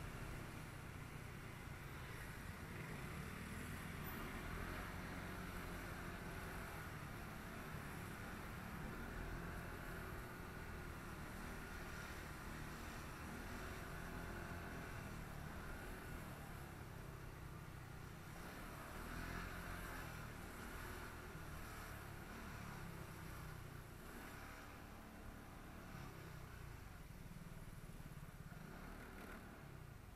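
Ride noise from a motor scooter moving slowly through wet city traffic: a steady low rumble of engine and road noise with a haze of traffic.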